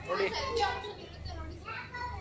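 Speech: a man says a word, with lively chatter of young people's voices around him.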